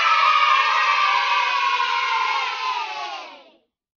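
A group of children cheering together, fading out about three and a half seconds in.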